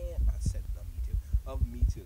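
A man's voice speaking in short broken phrases over irregular low thumps.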